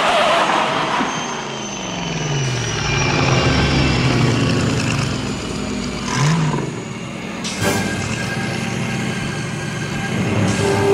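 DeLorean DMC-12 time-machine car driving by, its engine note falling in pitch as it passes. A sharp crack comes about three-quarters of the way through.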